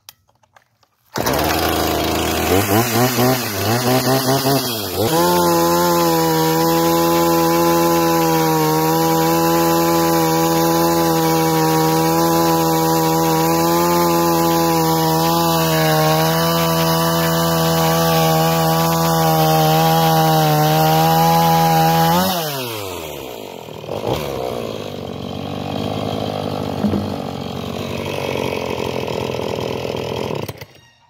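Husqvarna 450 Rancher chainsaw with a 50 cc two-stroke engine, revved a few times, then held at full throttle for about 17 seconds while it cuts a round off a log. The pitch drops back to idle about 22 seconds in, with one short blip of the throttle near the end. The saw is brand-new and cuts easily.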